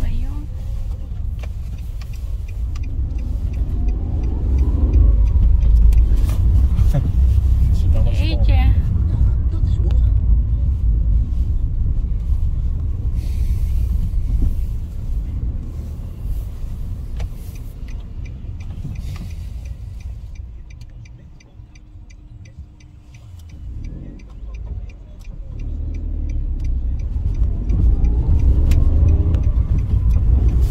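Car engine and road rumble heard from inside the cabin, with the engine rising as the car pulls away early on and again near the end, and dropping quieter for a few seconds about two-thirds of the way through as the car slows. A faint, regular light ticking runs through the second half.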